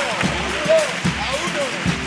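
Carnival comparsa's bass drum beating steadily about twice a second, with voices calling out over it.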